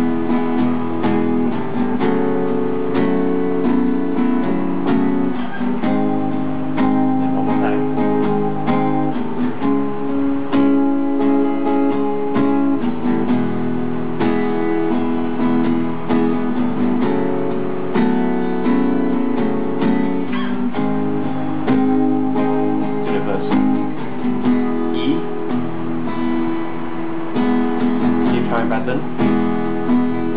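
Cutaway acoustic guitar strummed in a steady rhythmic down-and-up pattern, playing an intro chord progression in the key of E, with the chord changing every couple of seconds.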